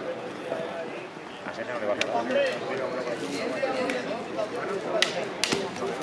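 Background chatter of several men's voices, with a few sharp knocks about two seconds in and again around five seconds in.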